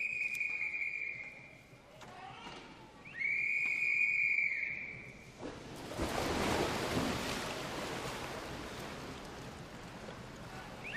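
Two long steady blasts of the referee's whistle, each about two seconds, calling the backstroke swimmers into the water. From about five and a half seconds in comes splashing as the swimmers jump into the pool, fading away toward the end.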